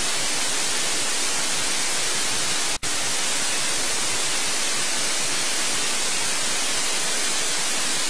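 Steady, loud electronic hiss of static on the broadcast audio feed, stronger in the highs, with a momentary dropout almost three seconds in.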